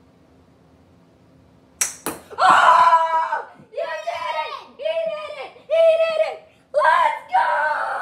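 Two sharp knocks about a quarter second apart, then a child yelling in a string of loud, high-pitched bursts.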